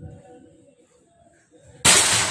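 A single shot from a PCP air rifle with a 500 cc air bottle: one sudden sharp crack near the end, with a brief ringing tail. Before it there is only faint low background noise.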